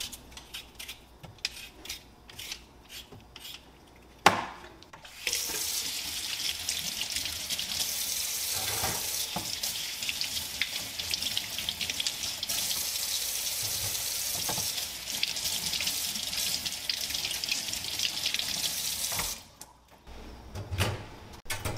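Light clicks and taps, then one sharp knock about four seconds in. Then a kitchen tap runs water into a sink, a steady hiss for about fourteen seconds that shuts off just before the end.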